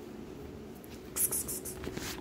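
Short scratchy rustles a little past halfway and again at the end, as a cat paws at a worn shaggy rug and a feather toy on a string drags across it, over a faint steady hum.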